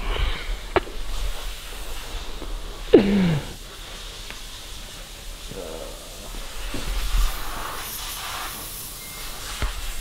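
A steady hiss, with a short voice-like sound about three seconds in.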